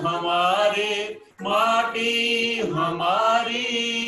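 A man and a woman singing a song together, holding long notes, with a brief break for breath a little over a second in.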